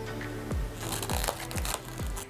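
Background music with a steady low beat, and over it a burst of rustling, clicking plastic noise for about a second, starting just under a second in, as the lid of a plastic food container is pressed shut.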